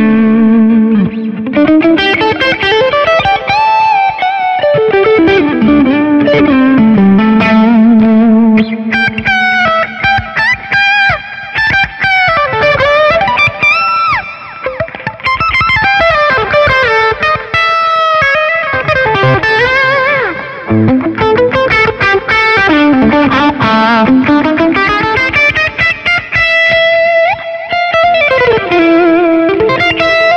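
Electric guitar played through a BOSS GT-1000 effects processor on a pushed-clean patch with a little grit, running fast lead lines with slides, bends and held notes.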